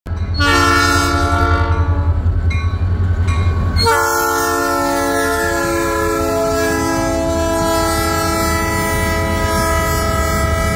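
Diesel freight locomotive air horn sounding a long, loud multi-note chord over a heavy pulsing engine rumble. About four seconds in the sound changes abruptly to a second sustained horn chord, some of its notes slowly sagging in pitch as the locomotives pass.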